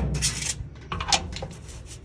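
Clatter of metal and glass inside a small countertop oven as a hand reaches in: a sharp knock at the start, a short scrape, then a few light clinks about a second in.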